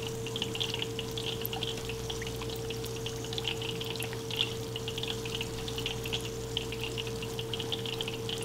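Cola boiling in a saucepan: a continual scatter of small bubbling pops and crackles, over a steady low hum.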